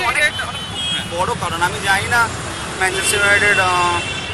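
A man's voice talking over the steady rumble of road traffic on a city street.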